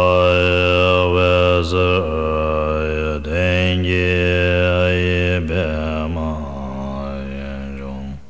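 Deep voice chanting a Tibetan prayer to Guru Rinpoche in one long low held tone, its vowel colour shifting, with brief breaks for breath. It drops lower and quieter about six and a half seconds in and stops at the end.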